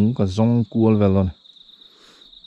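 A man talking for about the first second, over a steady high-pitched insect call that keeps going on its own after he stops.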